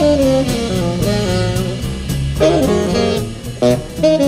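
Acoustic jazz quintet playing live: a horn melody line over piano, double bass and drum kit, with a steady cymbal pulse.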